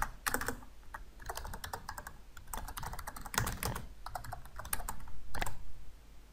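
Typing on a computer keyboard: an irregular run of key clicks, a few strokes louder than the rest, as a short line of code is keyed in.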